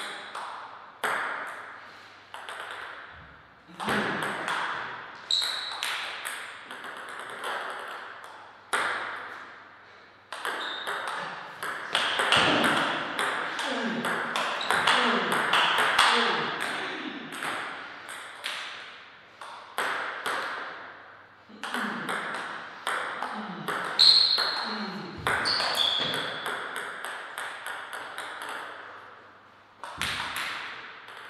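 Table tennis rallies: the celluloid ball clicking off rubber paddles and bouncing on the table, in irregular runs with pauses between points. Each hit leaves a short echo.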